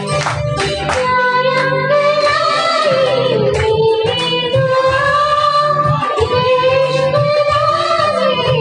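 A woman singing a Hindi film duet into a microphone over a karaoke backing track. The track's beat is heard alone at first, and her voice enters about a second in, holding long, gliding notes.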